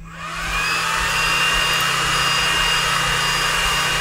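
An xTool D1 Pro laser engraver starting a job. The laser module's cooling fan spins up with a whine that rises over about half a second, then runs steadily with an airy whirr and a high, even whine.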